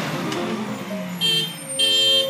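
Piano notes die away, then a vehicle horn honks twice: a short honk about a second in and a longer one near the end.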